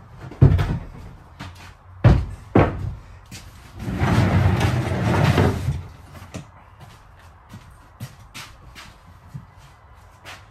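Knocks and thuds of a wooden plywood desk being handled and worked loose for removal: a sharp knock about half a second in, two more a couple of seconds in, then a rough scraping noise lasting about two seconds, followed by a few light taps.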